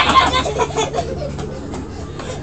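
Children's excited squeals and shouts, loudest in a sudden burst at the very start and trailing off, over a steady low hum.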